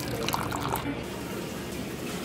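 Coffee pouring from a pump-action airpot into a mug, a stream of liquid filling the cup.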